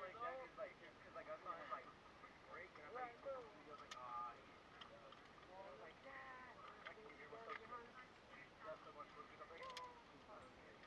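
Faint voices of people talking quietly, too low to make out, with a light click about four seconds in and another near the end.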